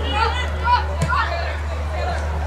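Women's voices calling and shouting across an open football pitch during play, high-pitched, over a steady low hum, with a single sharp knock about a second in.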